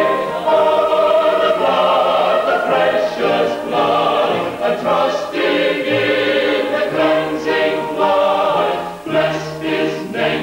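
Salvation Army choir singing together from their songbooks, held notes moving from one to the next about every second.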